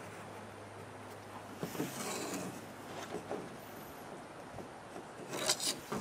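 Marker drawn along a wooden straightedge on a plastic wheelbarrow tub: faint rubbing and scraping, with a quick run of sharper scratches near the end.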